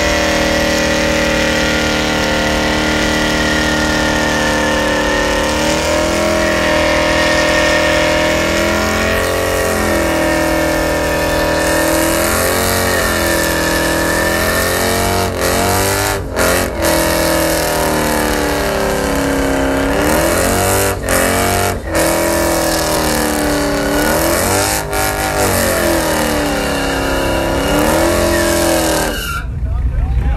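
Pickup truck's engine held at high revs in a burnout, the rear tyres spinning and smoking; the revs rise and fall again and again, with a few short lifts off the throttle partway through. The sound cuts off suddenly near the end.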